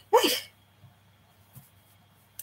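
A woman's single short exclamation, "hey", sliding down in pitch and lasting about half a second. A faint steady hum follows.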